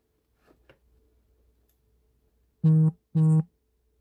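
A phone vibrating twice: two short, identical low buzzes, each about a third of a second, in quick succession in the second half.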